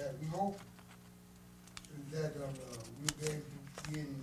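A man's voice speaking indistinctly into a small room's sound system over a steady low hum, with a few sharp clicks and light rustles in between.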